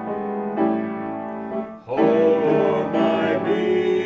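Grand piano playing in sustained full chords, with a brief break just before two seconds in before the next chord sounds.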